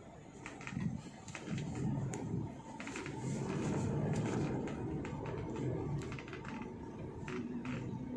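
Low rumble of a car moving slowly, heard from inside the cabin, with scattered light clicks and ticks.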